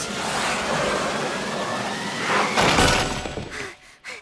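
A noisy rush of cartoon sound effects with a loud crashing burst about two and a half seconds in, dying away near the end.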